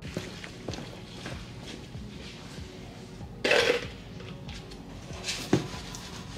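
SOS steel-wool soap pad scrubbing a pitted old chrome bumper, a run of rasping strokes and small clinks. A louder burst of scrubbing comes just past halfway, then a sharp knock near the end.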